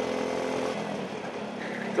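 Go-kart engine running at a steady drone, heard from onboard the kart while it is driven through a corner.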